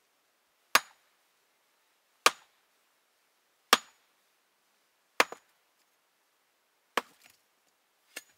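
Axe chopping: five sharp blows about a second and a half apart, some followed by a small second knock.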